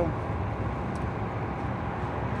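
Steady low background rumble of outdoor ambience in a pause between speech.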